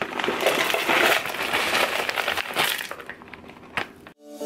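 Granola poured from a bag into a glass jar: a dense rattle of pieces landing on glass and on each other, which thins out after about three seconds, with one sharper tap just before the end.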